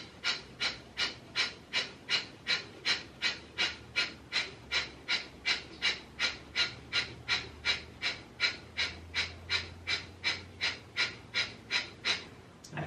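A man's rapid, forceful rhythmic breathing, about three even breaths a second, in the manner of the yogic breath of fire.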